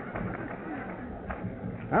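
Audience laughing.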